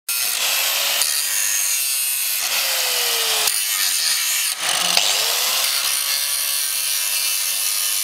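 Small handheld grinder with an abrasive disc grinding the steel wheel-arch lip of a car fender down to bare metal, a continuous hissing grind. Its motor pitch sags as the disc is pressed in, drops briefly about halfway through, then climbs back up.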